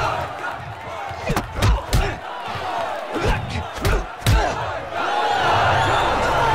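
Heavy punch impacts, about six hits in quick groups, over a crowd shouting and cheering around a fight ring; the crowd swells louder near the end.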